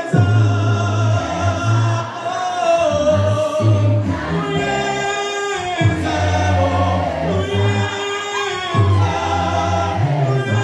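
A choir singing a gospel song, with long held notes and a strong low bass line.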